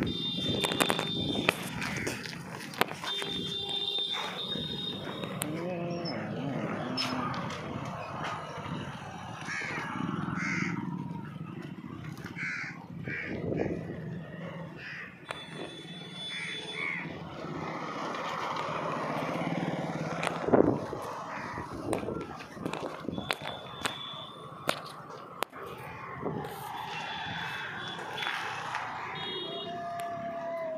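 Outdoor lane ambience with crows cawing and other birds calling at intervals, with voices heard now and then.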